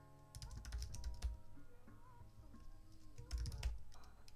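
Computer keyboard typing in two quick flurries of clicks, about half a second in and again near the end, over quiet background music.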